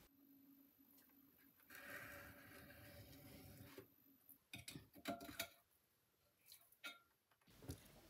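Near silence. A faint hum and soft scrape of a metal trimming tool against the clay base of a jar turning on a potter's wheel last about two seconds, followed by a few light clicks.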